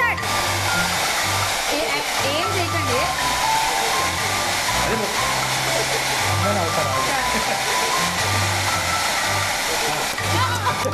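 Handheld hairdryer blowing steadily, its air stream holding a ball afloat, with background music with a bass line playing over it.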